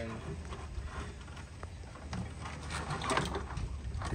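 Wiring harness and braided cables being handled and connectors fitted: irregular rustling with small clicks, loudest about three seconds in, over a steady low hum.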